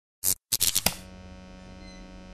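A few short, loud bursts of crackling noise in the first second, the last ending in a sharp click. A steady low electrical hum follows.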